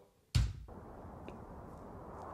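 A single sharp click about a third of a second in, then a faint steady hiss.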